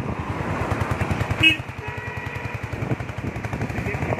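Motorcycle engine running with a rapid, even train of firing pulses while the bike rides along; a short high beep cuts in about one and a half seconds in.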